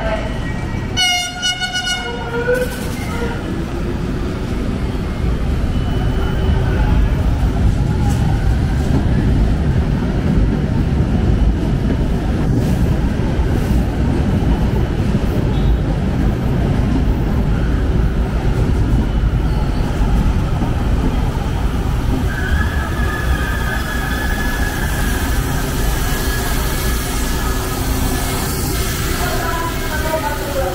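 A Manila LRT Line 1 light-rail train sounds a short horn blast about a second in, then runs into the station platform with a loud rolling rumble of wheels on rail. A high steady tone sounds for several seconds near the end as the train comes to a stop.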